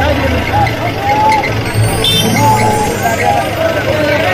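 Men's voices calling out over a vehicle engine running with a steady low rumble.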